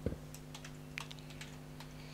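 A few separate keystrokes on a computer keyboard as code is typed, over a low steady hum.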